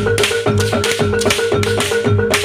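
Live gamelan-style jaranan accompaniment: metal mallet notes repeating over drum strokes, with bright clashing strokes at a fast, even beat of about four a second.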